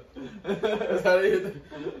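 Several men chuckling and laughing, mixed with bits of voice.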